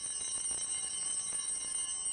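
Altar bells rung at the elevation of the consecrated host: a bright, continuous jingling ring of several high-pitched bells. It begins just before this point and starts to fade near the end.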